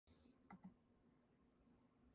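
Near silence with a faint steady hum, broken by two faint clicks about half a second in, a fraction of a second apart.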